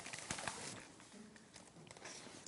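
Faint rustling and a few soft clicks of a picture book's pages being handled and turned, in a quiet room.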